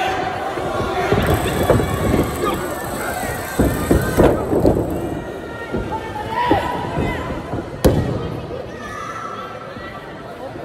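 Wrestling-ring impacts: a series of thuds and slaps as wrestlers hit and grapple on the ring canvas, among shouting voices, with one sharp crack about eight seconds in the loudest.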